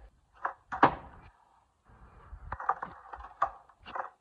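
A couple of handling knocks, the loudest about a second in, then skateboard wheels rolling on a concrete driveway with several sharp clacks of the board, the last near the end as a kickflip is attempted.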